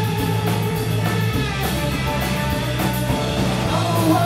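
Live rock band playing: electric guitar, bass guitar and drum kit with cymbals, a full loud band sound with a steady beat.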